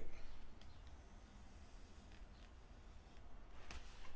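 Faint high-pitched buzz of a rechargeable plasma arc lighter held to a fire plug, cutting out about three seconds in, with a few faint clicks.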